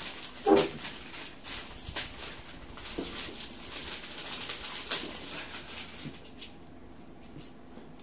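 Handling noises: a run of small clicks and rustles as things are picked up and moved, with a short grunt-like vocal sound about half a second in. It goes quieter for the last two seconds.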